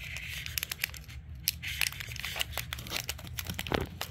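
Foil wrapper of a Pokémon TCG booster pack crinkling and crackling in a long run of small, sharp crackles as it is slowly and carefully torn open along its top.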